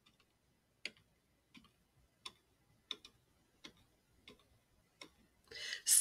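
Faint, evenly spaced ticking, about seven ticks at a slow, steady pace, roughly three every two seconds.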